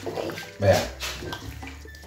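Chopped peppers and onion in sweet-and-sour sauce sizzling in a hot wok as a wooden spoon stirs them.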